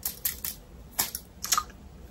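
A handful of light, irregular clicks from a metal eyelash curler being handled.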